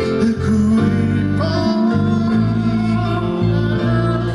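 A live Hawaiian band playing: strummed acoustic guitar and ukuleles over a steady bass line, with a singer.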